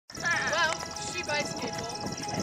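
A horse whinnying: one quavering, wavering call in the first second, with a shorter call after it, over music and voices.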